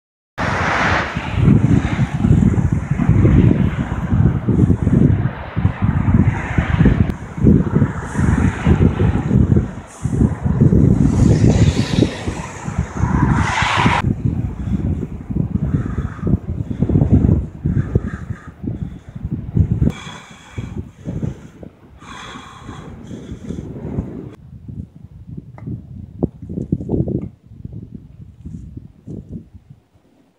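Outdoor roadside noise: cars passing on the road mixed with wind on the microphone, loud and gusty through about the first half, then quieter after a cut about 14 seconds in.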